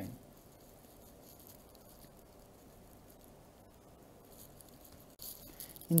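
Marker pen writing on a whiteboard: faint scratching strokes that grow louder in the last second or so, with a couple of light taps of the pen on the board.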